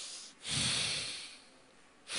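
A man breathing hard through one nostril, the other held shut with his fingers, close to a handheld microphone during alternate-nostril breathing (anulom vilom). One breath ends just after the start, and after a short pause a new breath of about a second starts strong and fades away.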